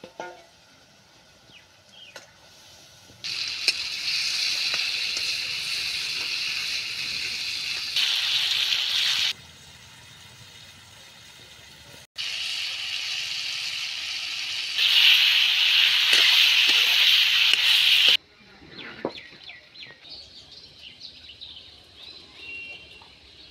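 Sliced tomatoes frying in hot oil in a wok over a wood fire: loud, even sizzling in two long stretches that start and stop abruptly, loudest in the second. Near the end the sizzling gives way to short chirps.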